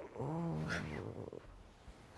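A man's low, drawn-out groan while sleeping, rising and then falling in pitch, about a second long.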